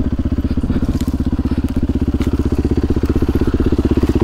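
Yamaha four-stroke single-cylinder enduro motorcycle engine running at steady, even revs while the bike pushes through undergrowth, with a couple of brief sharp cracks over it.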